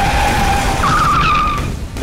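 Vehicle tyres screeching under hard braking. A sustained screech starts suddenly, and a second, higher, wavering screech joins about a second in and then fades.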